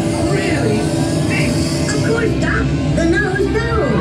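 Dark-ride soundtrack: music playing steadily with voices over it.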